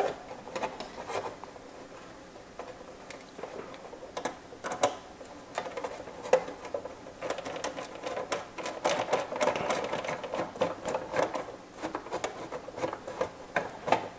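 Hard plastic RC truck body parts and small metal fittings clicking, tapping and knocking irregularly as a cabin piece is pressed and lined up into the body, the clicks coming thicker in the second half.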